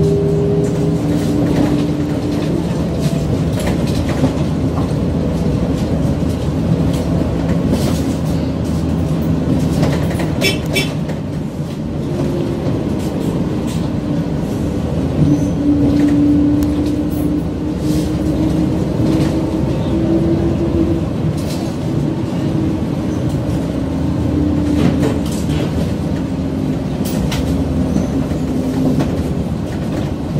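Inside a moving city bus: the engine drones steadily, its tone drifting up and down as the bus speeds up and slows, over road noise and scattered clicks and rattles from the cabin.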